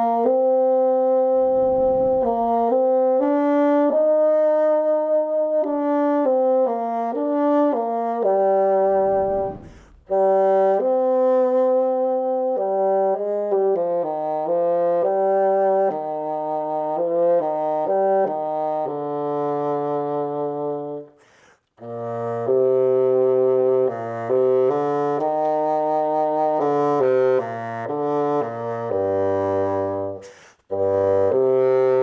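Bassoon played solo: a melodic passage of separate notes, broken by short pauses for breath about ten seconds in and again around twenty-one seconds. The last phrase moves down into the instrument's lower range.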